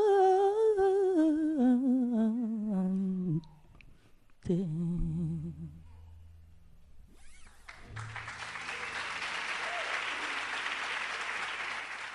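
A woman's wordless humming ends a song, a held note with vibrato sliding down in pitch over about three seconds, followed by a short last note. From about seven seconds in, audience applause.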